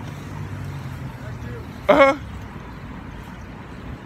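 Low, steady hum of a motor vehicle engine that fades away about a second and a half in, over faint street background noise.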